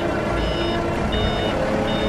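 Hyster forklift's reversing alarm beeping at an even pace, three short high beeps in two seconds, over the low hum of its engine.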